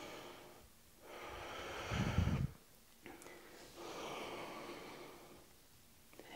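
A woman breathing audibly through a squat-to-stand yoga flow: two long, soft breaths, the first ending in a louder puff about two seconds in.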